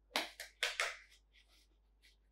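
A purple nitrile glove being handled and pulled onto a hand: a few quick rustling snaps of thin rubber in the first second, then fainter crinkles.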